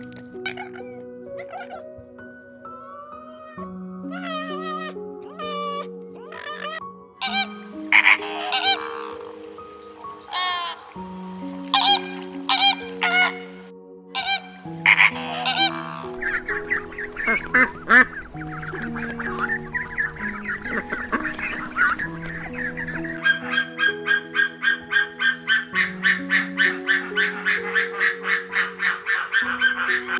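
Gentle background music of slow, sustained notes, with animal calls laid over it. In the first half there are scattered bird calls. About halfway through, a flock of flamingos honks and chatters over a noisy wash that cuts off suddenly. Near the end comes a fast run of repeated calls, about four a second.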